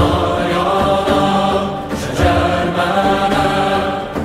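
Choir of voices singing long, held chant-like notes over a low sustained instrumental drone, part of a live folk-style ensemble performance; the chord shifts about two seconds in.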